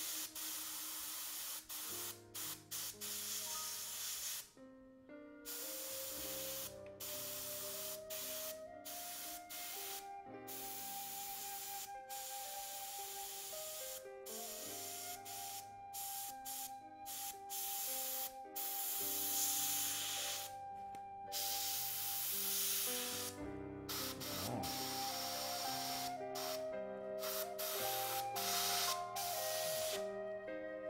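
Iwata Eclipse bottom-feed airbrush hissing as it sprays fine highlights, broken by many brief silent gaps, over soft background music with held notes.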